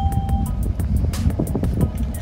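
Music with a steady beat over a deep, continuous rumble from the ascending Atlas V rocket and its solid rocket boosters. A short steady beep sounds right at the start.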